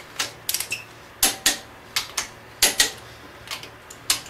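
Click-type torque wrench clicking in quick pairs, about five times, as it is put on big-block Chevy cylinder head bolts that are already at the final 80 lb torque, confirming the torque.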